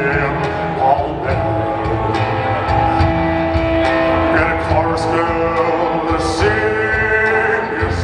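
Live blues band playing: an electric guitar holds long notes, one bending upward near the end, over drums and bass, with cymbal strikes recurring throughout.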